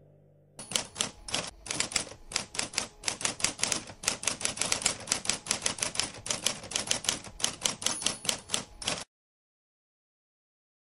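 Rapid typewriter keystrokes, about five a second, starting about half a second in and stopping abruptly near the end.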